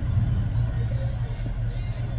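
Steady low rumble, a deep even hum with nothing pitched or rhythmic above it.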